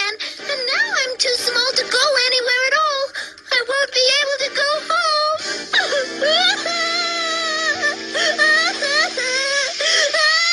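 A cartoon character crying in a high, wavering wail. Sustained background music joins in under it about six seconds in.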